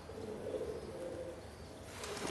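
A flock of pigeons cooing faintly, a soft low coo in the first half.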